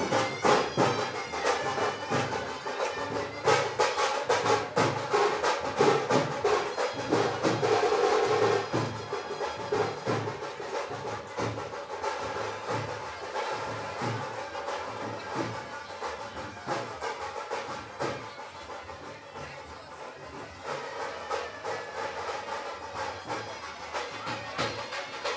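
Brass band music with a steady drum beat, fading somewhat in the second half.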